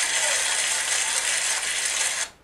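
Large theatre audience applauding and laughing after a punchline: a dense, steady wash of clapping with crowd laughter beneath it.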